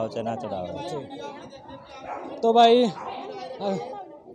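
People talking: a man's voice over the chatter of a crowd, loudest about two and a half seconds in.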